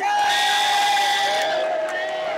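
Electronic match-timer buzzers sounding as the bout's clock runs out. One steady tone starts abruptly and holds for about a second and a half; a second, slightly lower tone comes in near the end and carries on. Both sound over arena crowd noise.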